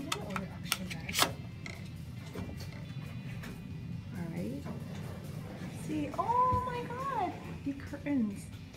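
Hotel-room key card pushed into the wall power slot by the door: a few sharp clicks in the first second or so. A drawn-out pitched sound rises, holds and falls near the end.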